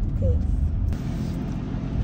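Steady low rumble of a car's engine and road noise heard from inside the cabin, with a steady hiss joining about a second in.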